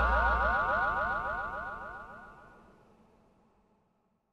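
Outro music ending on an electronic sound effect: rapidly repeated rising synth glides that echo and fade away over about three seconds, with a low bass note cutting out about half a second in.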